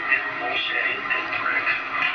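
People's voices talking, with the dull, band-limited sound of an old film soundtrack.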